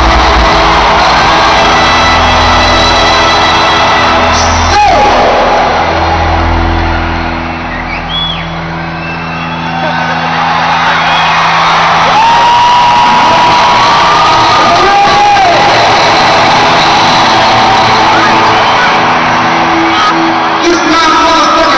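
Live band music over a stadium PA, heard from among the crowd, with long held low notes that dip in loudness partway through. Audience cheering, with a few drawn-out whoops rising and falling over the music.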